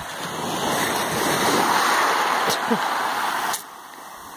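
Small waves washing up a shingle and pebble beach, the surge swelling and easing off, cut off suddenly near the end.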